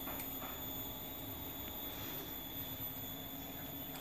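Faint steady background hum with a few light clicks of small metal parts being handled and fitted together.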